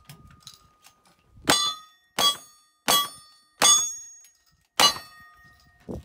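Five revolver shots at steel plate targets, each followed at once by the ring of the struck plate. The first four come about two-thirds of a second apart, with a longer pause before the fifth; all five are hits, a clean string.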